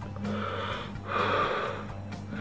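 A man taking two heavy, hissing breaths, the second louder, while his mouth burns from a habanero pepper.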